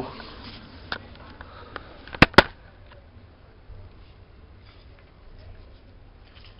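Handling sounds from small objects: a few faint knocks, then two sharp clicks in quick succession a little over two seconds in.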